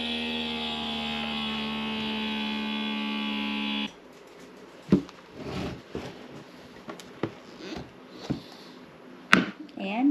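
Electric mason-jar vacuum sealer running with a steady motor whine for about four seconds, then cutting off suddenly once the jar is drawn down. A few light clicks and knocks follow as the sealer is lifted off the jar lid.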